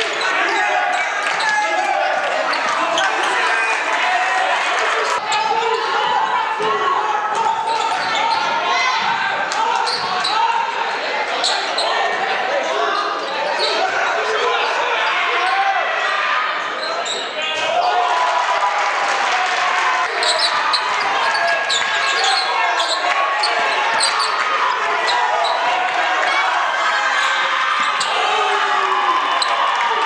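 Basketball dribbled and bouncing on a hardwood gym floor during live game play, with players and onlookers calling out indistinctly, all ringing in a large gymnasium.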